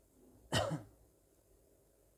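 A person clearing their throat once, a short cough-like burst about half a second in.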